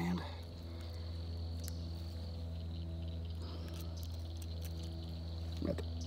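Insects trilling steadily in a thin, high tone over a low, steady hum.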